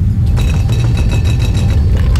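Loud, low, steady rumbling roar of an approaching tornado, like a freight train. About half a second in, a fast rattle with a ringing clink joins it and runs for over a second.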